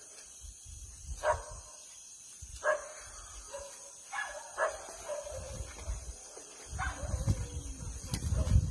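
A dog barking, single barks spaced a second or more apart, about five in all. A low rumble on the microphone grows louder near the end.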